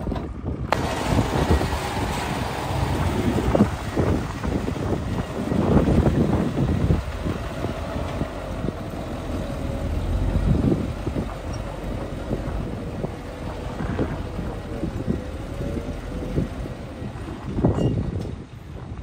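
Dump truck unloading: its engine runs under the tipping bed while dirt and rocks slide out with irregular knocks and clatter, and a louder knock comes near the end.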